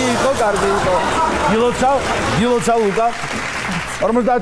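Studio audience applause, with voices talking over it. The applause fades out near the end.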